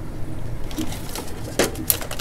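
Hands rummaging among power cords and handling a plastic plug: soft rustling with a few light clicks, a sharper knock about one and a half seconds in, and a sharp click near the end.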